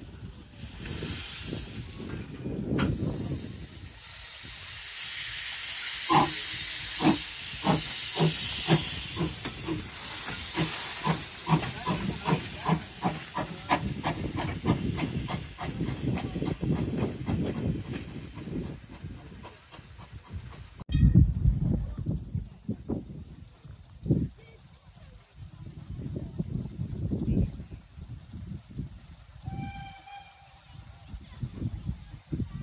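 Small steam tank locomotive pulling away: a loud hiss of steam from its open cylinder drain cocks, then exhaust beats that begin about six seconds in and come steadily faster as it gathers speed. The sound cuts off abruptly about two-thirds of the way through.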